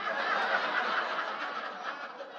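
Audience laughing together in a hall: the laughter breaks out all at once and slowly dies away.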